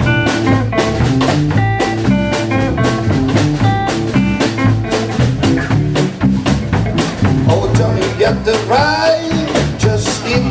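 Live blues band playing an instrumental passage: electric guitar notes over electric bass and a drum kit keeping a steady beat, with bending notes near the end.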